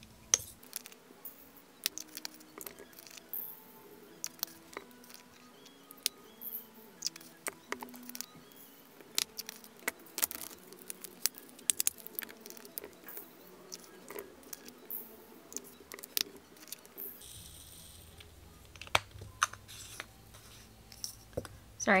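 Diamond-painting drills (tiny resin rhinestones) clicking and rattling as they are poured into small clear plastic storage compartments, with plastic lids and jars clicking irregularly, over soft background music.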